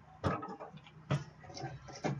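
Two light knocks about a second apart, with faint scuffing between them: cardboard card boxes being handled and set down on a wooden table.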